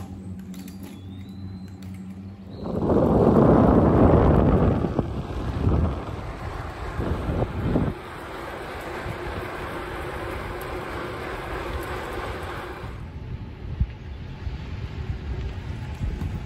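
Wind rushing over the microphone of a camera moving along the road. It starts suddenly a few seconds in, is loudest for about two seconds, then settles into a steadier rush that drops away near the end.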